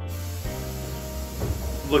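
Background music: a low sustained drone under a soft hissing wash.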